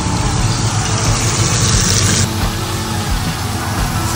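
Floured prawns and small fish deep-frying in a pot of hot oil, a steady sizzle, with a brighter, hissier stretch about a second in that stops suddenly.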